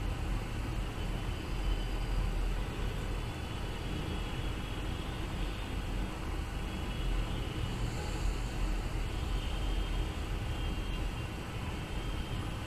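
Steady low rumble and hiss of background noise, with no speech.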